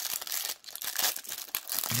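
Clear plastic wrapper around a remote control crinkling as hands handle it: a dense run of crackles with a brief pause about half a second in.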